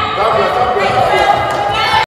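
Netball players calling and shouting to each other during a passing drill, the voices echoing around a large sports hall, with thuds of the ball and feet on the wooden floor.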